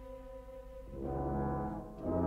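Orchestral film-score music. A held note gives way about a second in to a swelling chord from low brass.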